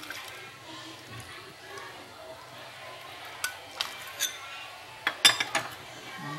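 Coconut milk poured from a bowl into a pot of simmering sweet soup, with a metal ladle clinking against the pot several times in the second half. The clinks are loudest in a quick cluster near the end.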